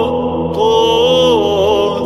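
Orthodox liturgical chant: a sung melody line with vibrato held over a steady low drone. The melody breaks off briefly near the start and comes back on a new note about half a second in.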